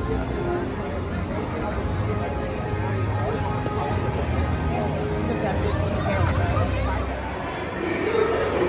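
Outdoor theme-park ambience: chatter of passing visitors over background music.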